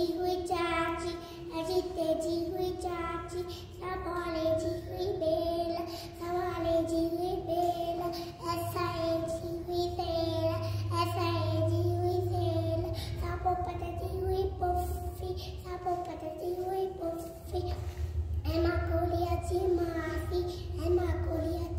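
A young boy singing a Sindhi nursery rhyme unaccompanied, in short sung phrases with brief breaks for breath.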